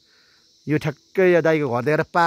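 Insects chirring steadily at a high pitch, with a man's voice breaking in loud and drawn-out from just under a second in.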